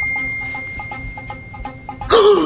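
A steady high-pitched electronic tone held over faint background music with a quick, light repeating pattern, the whole fading gradually.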